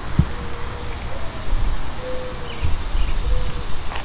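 Outdoor background: a steady low rumble of wind and handling on the microphone, with a couple of soft thumps, as the camera is carried around the car. Three faint short whistle-like notes and a few faint chirps sound in the distance.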